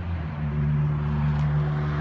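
A motor vehicle engine running steadily nearby, its hum stepping up in pitch about a third of a second in and then holding.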